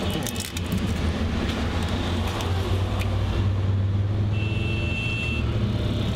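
Taxi engine and road noise heard from inside the moving car's cabin, a steady low rumble. A brief high tone sounds a little after four seconds in.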